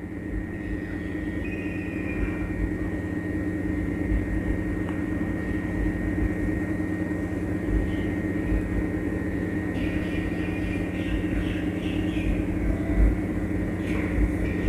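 Steady low droning hum that holds one set of tones and grows slightly louder, with a thin high tone running above it and a few faint blips near the end.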